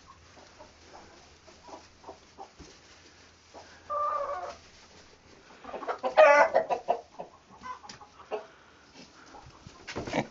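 Chickens clucking in a coop, with a short call about four seconds in and a louder, longer call around six seconds in.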